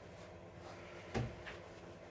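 A single dull thump about a second in, then a fainter tap, as a pair of jeans is handled and put down.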